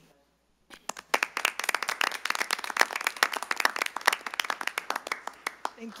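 A small group of people clapping, starting about a second in and dying away near the end.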